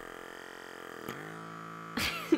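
Battery-powered pore vacuum motor running with a steady electric hum while its suction head is held on the nose, with a short click about a second in.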